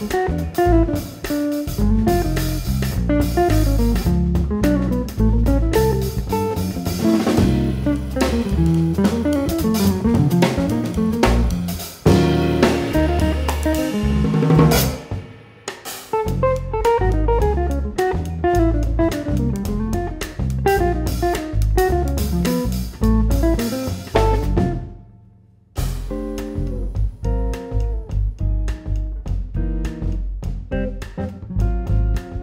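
A jazz trio plays a fast tune: a Gibson hollow-body electric guitar runs quick single-note lines over electric bass guitar and a drum kit. The band drops out briefly shortly before the end, then comes back in.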